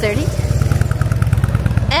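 Motorcycle engine running low-pitched and steady as the bike rides close past.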